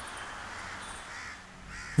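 Crows cawing faintly over a steady outdoor background hush.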